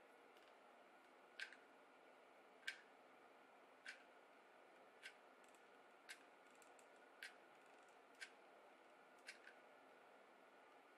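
Near silence broken by about eight faint, sharp clicks, roughly one a second, from small hand tools being worked.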